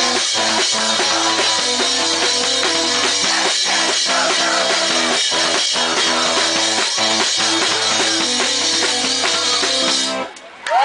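Live duo playing loud and fast: electric keyboard chords over a rock drum kit, with the kick and snare hitting steadily.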